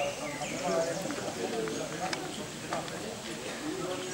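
Indistinct voices of people talking in the background, with a few sharp clicks.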